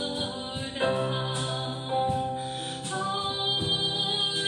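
A woman's voice singing a worship song in long held notes.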